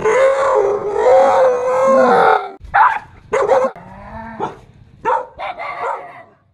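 A small dog gives a long, wavering howl lasting about two and a half seconds, then yelps and barks in short bursts, about half a dozen times.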